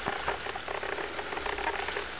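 Water spraying out of a leak between the banded wooden staves of a hydroelectric penstock under pressure, making a steady hiss.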